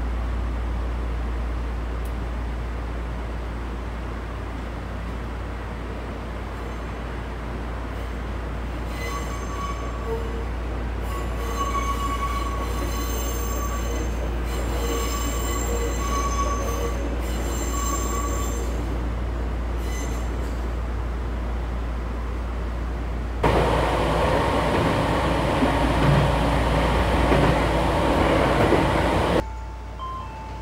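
Electric commuter train running along the track beside a station platform, its wheels squealing in several high, wavering tones from about a third of the way in. A louder rush of noise starts about three-quarters of the way in and cuts off suddenly just before the end.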